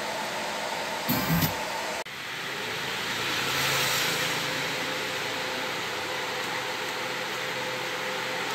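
Steady hiss and hum from a running 5.1-channel MOSFET power amplifier with no programme playing. There is a short thump about a second in, and the noise dips suddenly at two seconds before swelling back.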